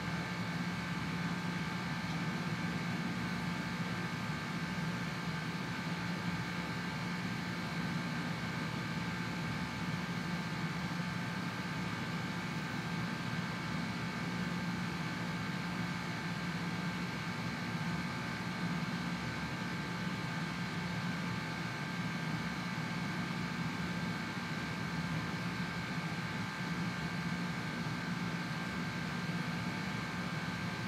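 Steady room hum and hiss, unchanging, with a low hum and a few faint high whining tones over it.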